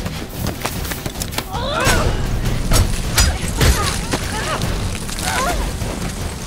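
Fight sound from two people grappling: strained grunts and short cries, with a few sharp impacts close together in the middle, over a low rumble.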